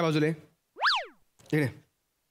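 Comedy sound effect: a whistle-like tone that swoops up in pitch and straight back down again in about half a second.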